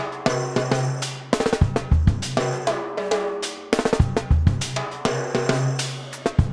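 Drum kit played in a busy funk groove: rapid snare strokes and rimshots, kick drum and cymbals, over a steady low note held underneath that drops out briefly about halfway through.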